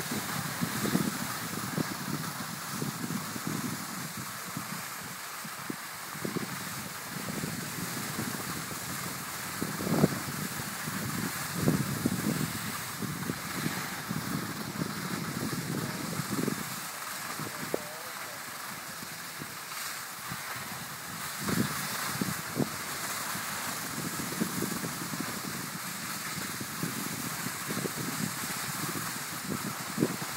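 Wind buffeting the microphone of a camera carried by a moving skier, in irregular low gusts over a steady hiss of skis sliding on packed snow.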